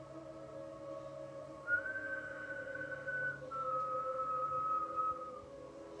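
Someone whistling two long, steady notes, the second a little lower than the first, over a sustained musical drone.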